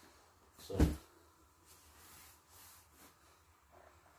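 A single dull thump about a second in as a down sleeping bag is dropped onto a carpeted floor, followed by faint rustling of its nylon shell as it settles flat.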